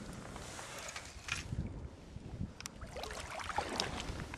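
Wind buffeting the microphone over a flowing river, with a few short splashes and scrapes of wading into the shallows over river stones.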